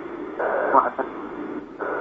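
Speech only: a man talking in Arabic, with the thin, narrow sound of a radio broadcast.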